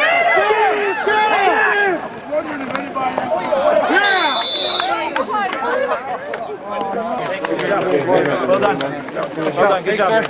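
Several men shouting and calling out at once on an open football field, with a referee's whistle blown once for about a second around four seconds in. From about seven seconds on, the voices turn to mixed chatter over short sharp slaps.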